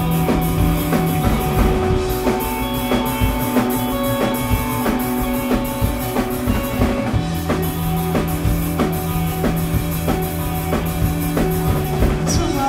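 Punk rock band playing live: a drum kit keeps a steady driving beat under guitar and bass holding long notes. The low note steps up about a second in and drops back about seven seconds in.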